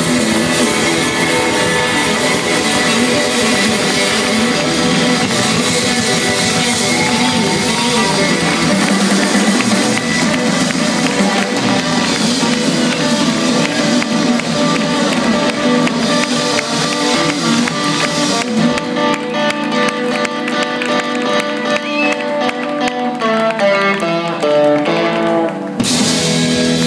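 Live rock band playing an instrumental passage with electric guitars and drum kit. About two-thirds of the way through, the cymbals and drums drop away, leaving ringing, sustained guitar notes and a short falling run of notes near the end as the song winds down.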